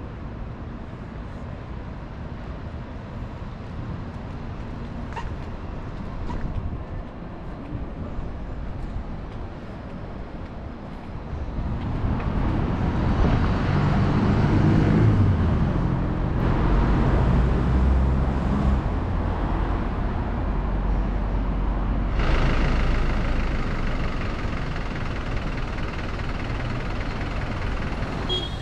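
City street traffic noise. A motor vehicle's engine grows louder about twelve seconds in and stays close for several seconds before easing off, over a steady traffic hum.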